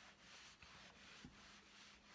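Faint, repeated swishes of a dry Norwex stainless steel cloth being rubbed over a stainless steel refrigerator door, buffing it to a shine.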